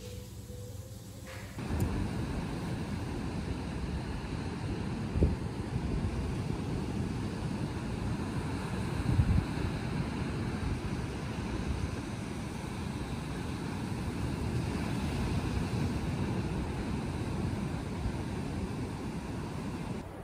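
Heavy surf breaking on a sandy beach, mixed with strong wind buffeting the microphone. It starts suddenly about a second and a half in after a quiet stretch, with louder gusts about five and nine seconds in.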